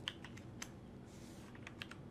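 Computer keyboard typing: several faint, quick keystrokes, irregularly spaced, in a cluster near the start and another near the end with a pause between.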